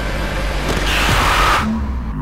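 Trailer sound-design whoosh over a low rumbling drone: a rushing noise swells and cuts off sharply about a second and a half in.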